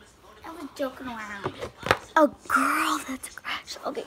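A girl's voice talking quietly, half-whispered and unclear, with a single sharp click about two seconds in.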